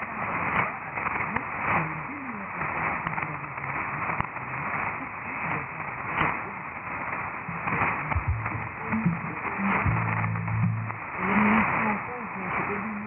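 Weak shortwave AM broadcast from Radio Nationale (Guinea) on 9650 kHz, heard through an SDR receiver: faint voice and programme audio buried under steady static hiss. The sound is narrow and muffled, with nothing above about 3 kHz.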